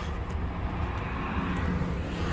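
Steady low hum of diesel truck engines idling.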